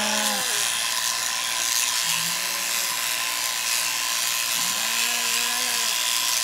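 Overhead-drive electric sheep shearing handpiece running, its cutter working across the comb with a steady high whine and hiss as it cuts through a lamb's fleece.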